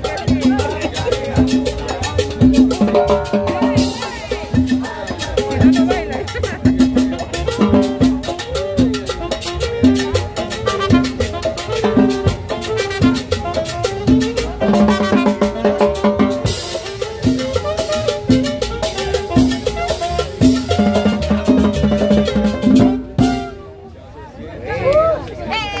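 Live Latin dance music from a small band, with drum kit and a bass line on a steady beat. The music stops about a second before the end.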